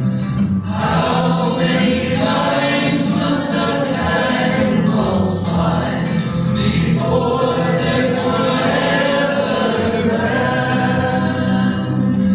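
A congregation singing a hymn together, many voices holding long notes.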